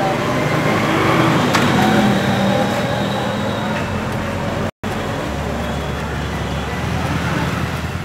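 Street traffic: motor scooters, motorcycles and cars running and passing close by, a steady wash of engine and tyre noise. The sound cuts out for an instant a little past halfway.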